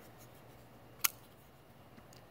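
A single sharp click about a second in as a Spyderco Para 3 folding knife's blade is flicked open and snaps into its locked position.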